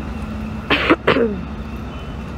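A woman coughing twice in quick succession about a second in, the second cough trailing off in a falling voiced tone; she has a lingering cold. Steady street traffic hum underneath.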